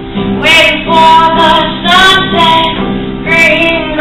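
A woman singing live while playing an acoustic guitar; the guitar is alone at first, and her voice comes in about half a second in with several held sung notes over the guitar.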